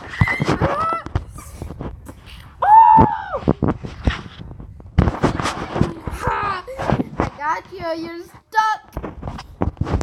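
A child's high-pitched squeals and playful vocal noises without clear words: a long squeal that rises and falls about three seconds in, and a fast wavering trill near eight seconds.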